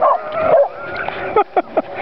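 A dog yipping and whining at its owner, with a thin rising whine about a second in and a few short sharp yips near the end.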